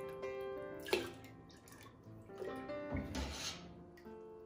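Background music with sustained notes, over a ladleful of hot water poured into a pot of cheese curds and whey, with a short splash about three seconds in. A sharp knock about a second in.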